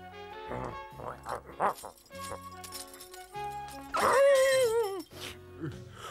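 Cartoon dog whining over background music: a few short breathy sounds, then about four seconds in a long, loud, wavering whine that falls in pitch as it ends.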